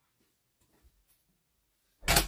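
Near silence: room tone with a few faint soft ticks.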